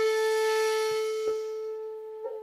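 Bamboo shakuhachi holding one long note that slowly fades, its breathy edge dying away after about a second and a half and leaving a purer tone. A short click sounds about a second in.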